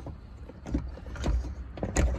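Molded rear seat header trim panel of a 2000 Ford Mustang knocking and tapping a few times as it is lowered and its tabs are dropped into their holes, over a low rumble of handling noise.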